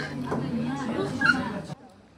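Voices chattering in a busy restaurant, cut off suddenly near the end, when the sound drops to a much quieter background.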